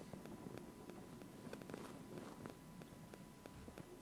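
Faint sound of a pickup truck creeping slowly along a dirt road, heard from the cab: a low rumble with scattered small crackles from the tyres and a faint steady whine.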